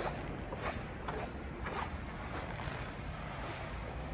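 Steady low background noise with a few faint soft taps about half a second apart.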